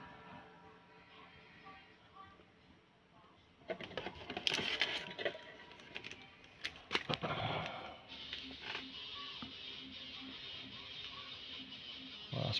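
Faint background music, with rustling and clicking starting about four seconds in and lasting a few seconds as a foil booster pack is pulled out of its cardboard display box and handled.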